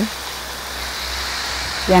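Garden hose spray nozzle hissing steadily while a car approaches on the street, its low rumble growing louder toward the end.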